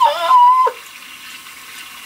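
A woman's high, drawn-out nonverbal exclamation of pleasure, under a second long, then a steady hiss in the background.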